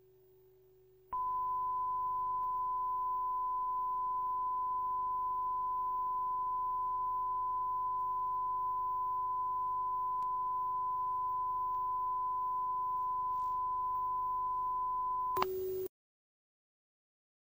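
A single steady pure test tone, like a video reference tone, starts abruptly about a second in and holds unbroken. Near the end a half-second burst of TV static hiss replaces it before the sound cuts off.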